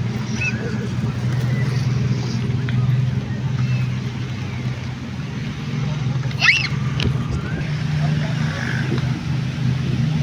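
Town street traffic: a steady low drone of car and motorcycle engines, with a brief sharp high-pitched sound about six and a half seconds in.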